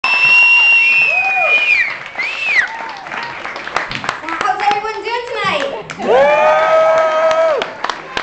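A small audience cheering: high whistles and whoops over scattered clapping, with shouted voices. One long held call comes near the end.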